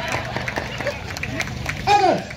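Murmur of voices from an outdoor crowd over a steady low hum. A man's voice comes in loudly near the end.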